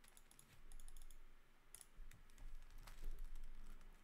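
Faint computer keyboard typing: a quick run of key clicks in the first second, then scattered single clicks.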